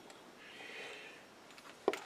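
Quiet handling of a steel tapping guide: a faint, soft rasp as the tap is turned by hand in its sliding barrel, then a single sharp metallic click near the end as the guide is moved.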